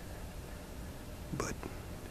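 Mostly a faint steady hiss with no distinct sound, then one quietly spoken, near-whispered word from a man near the end.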